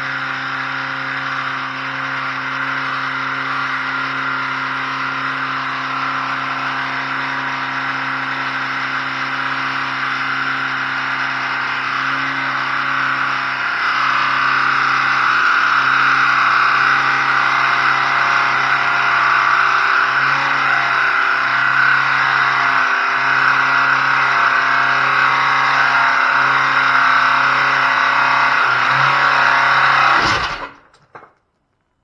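2011 Dodge Caliber's four-cylinder engine held at high revs with the throttle pinned, being run to destruction. It runs steadily and grows louder and harsher about halfway through.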